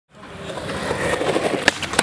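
Skateboard wheels rolling on concrete, growing louder, with a sharp clack near the end as the board meets the ledge for a grind.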